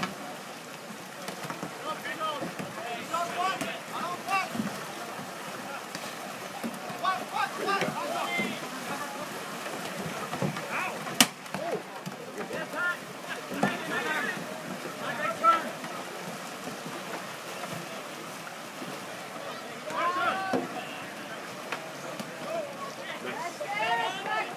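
Distant shouts and calls from canoe polo players and spectators come and go over a steady background hiss. A single sharp click sounds about eleven seconds in.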